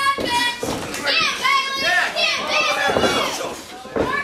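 Children in the audience shouting and yelling in high-pitched voices, several calls overlapping.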